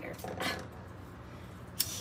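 A disposable lighter struck once near the end, a short sharp click as it lights, after faint handling sounds.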